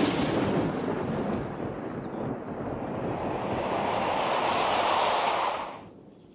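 A loud rushing noise that swells, its pitch rising over the last few seconds, and cuts off suddenly just before the end.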